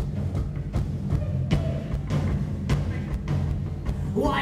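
Live rock band playing an instrumental drum-and-bass groove with no vocals. The low end is heavy and steady, and sharp percussive hits land roughly every half second.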